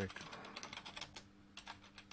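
Typing on a computer keyboard: a quick, irregular run of key clicks as a word is typed.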